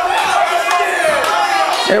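A person's voice in one long drawn-out shout, wavering in pitch, that ends just before the commentary resumes.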